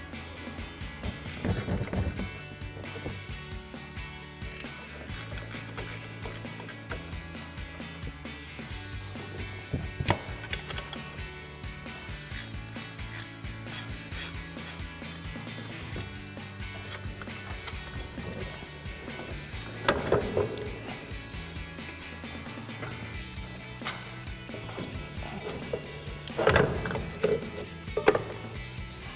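Background music over the clicking of a ratcheting wrench running off the front strut-tower nuts, with a few sharp metal knocks as the factory strut is worked free, the strongest about ten and twenty seconds in and near the end.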